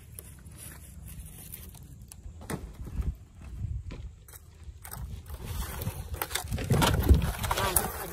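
Scattered clicks and knocks of dry wood veneer scraps being stepped on, then a louder rustling clatter near the end as thin dried wood veneer sheets are handled, over a steady low rumble.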